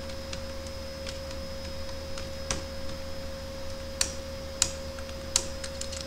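Computer keyboard keystrokes typing in short, irregular bursts, with a few sharper key clicks in the last two seconds, over a steady electrical hum.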